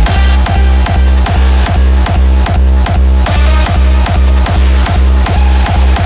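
Hardstyle music: a distorted, pitched hardstyle kick drum hitting steadily at about two and a half beats a second, with synths layered above.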